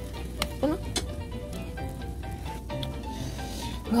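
Egg and natto mixture sizzling as it fries in a rectangular tamagoyaki pan. A wooden spoon stirs it, with short scrapes and taps against the pan now and then.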